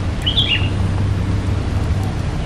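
A bird chirps briefly, a few quick notes about half a second in, over a steady low rumble.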